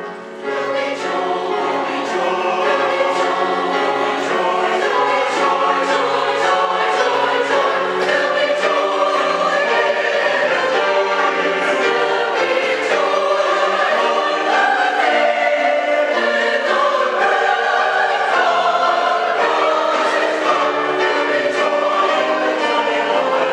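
Mixed church choir singing an anthem, loud and full, swelling in after a brief lull about half a second in.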